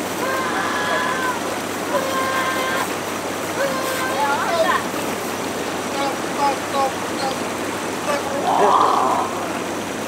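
Steady rush of water from a hot tub's bubble jets and an outdoor shower running, with a person's voice making drawn-out, wordless sounds over it at times.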